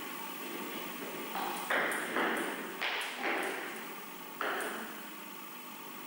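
A table tennis ball bouncing, about five or six sharp knocks at uneven intervals, each trailing off in an echo.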